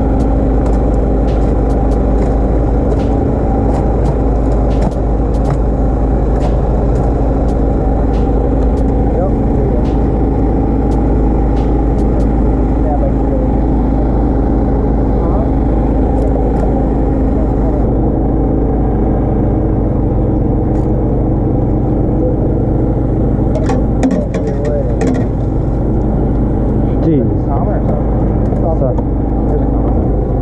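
A boat's engine running steadily at one constant speed: a deep, even hum whose pitch does not change.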